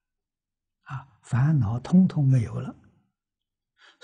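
An elderly man's voice speaking one short phrase, with silent pauses before and after it.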